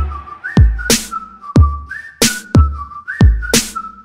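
Instrumental break of a pop song: a whistled melody sliding up and back down over a deep, pitch-dropping kick drum and sharp snare hits, with no singing.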